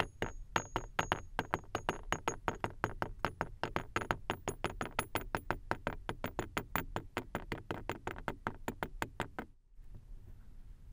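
Balls of kinetic sand dropping into a tall drinking glass one after another, each landing with a short, soft tap, about six a second. The taps stop shortly before the end.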